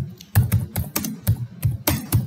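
Typing on a computer keyboard: a quick, uneven run of key clicks, about eight keystrokes in two seconds.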